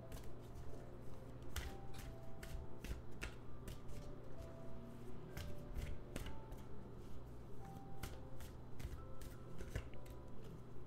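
A tarot deck being shuffled by hand, packets of cards lifted and dropped onto the deck in quick, irregular taps, several a second.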